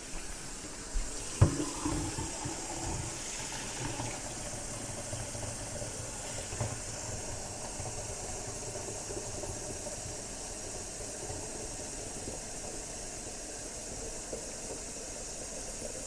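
Kitchen faucet running a steady stream of water into a plastic measuring pitcher in a stainless steel sink, filling it. A couple of sharp knocks come about a second in.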